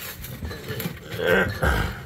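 Thick cardboard of a beer 12-pack case being scraped and pulled at by hand as it is forced open, with rustling that grows louder about a second and a half in.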